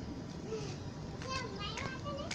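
Children's voices talking off to the side, high-pitched speech in short phrases.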